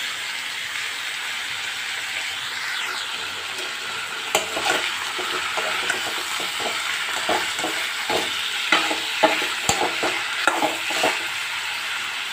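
Chicken pieces with onion and potato sizzling steadily in oil in a wok. From about four seconds in, a utensil scrapes and knocks against the pan in quick short strokes as the pieces are stirred. The chicken has given off its water and is now lightly frying.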